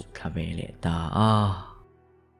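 Speech: a man's narrating voice, its last word drawn out and fading away about a second and a half in, followed by faint, steady background music.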